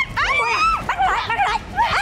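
Women screaming and shouting in high-pitched, strained voices during a hair-pulling scuffle, a string of short cries that rise and fall in pitch.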